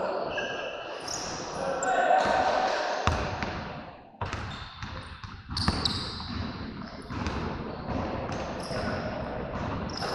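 Voices of several people talking and calling over one another, with occasional sharp thuds, the clearest about three seconds in and again near six seconds.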